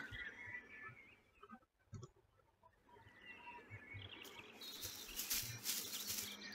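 Faint outdoor ambience with small birds chirping, fading in after a near-silent gap about a second and a half in and growing towards the end.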